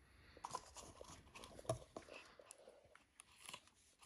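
Faint, scattered crinkles and small clicks of sticky tape being handled and pressed around a paper cup.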